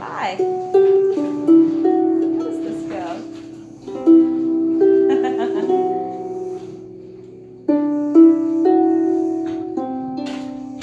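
Lever harp playing a slow hymn melody in plucked notes and chords, each phrase starting with a strong pluck and ringing away, with new phrases about a second, four seconds and eight seconds in. It is pitched in a key too high to sing comfortably.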